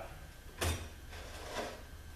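Parts being handled on a workbench: one short knock about two-thirds of a second in, with faint handling noise around it.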